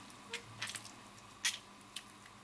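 Half a lime squeezed by hand, its juice dripping onto the food in the pan: a few faint wet squishes and clicks, the loudest about a second and a half in.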